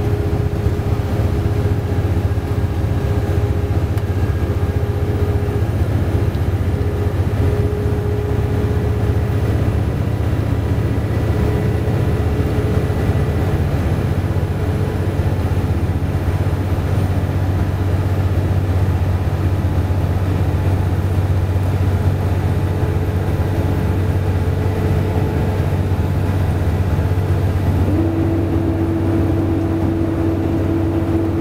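Steady engine and road noise heard from inside a vehicle cruising at highway speed: a continuous low rumble with a faint steady hum above it, which steps down in pitch near the end.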